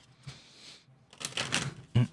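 A deck of tarot cards being shuffled by hand: a soft sliding hiss, then about a second in a rapid run of fluttering card clicks.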